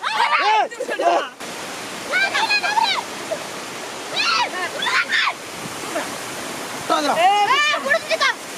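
Water rushing and splashing as a fishing net is hauled through shallow water, a steady wash that starts about a second and a half in, with excited voices calling over it.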